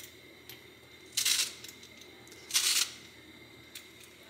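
A tall salt mill grinding salt into a pot of water, in two short bursts about a second and a half apart.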